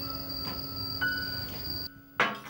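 Background score of sustained held synthesizer-like notes with a steady high tone on top, cutting off all at once just before the end.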